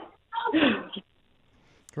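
A short burst of a woman's voice over a telephone line, under a second long, heard narrow and thin through the phone.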